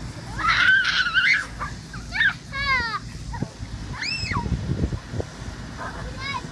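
Children shrieking and squealing during a water balloon fight: a loud high-pitched shriek right at the start, then several shorter high squeals that rise and fall.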